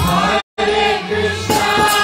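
Kirtan music: several voices singing a devotional chant together over harmonium. The sound cuts out completely for an instant about half a second in.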